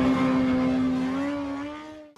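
Motorcycle engine held at steady revs, rising slightly in pitch before fading out.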